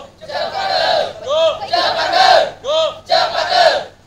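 A group of young voices shouting a cheer in unison, in about six loud bursts with short breaks between them.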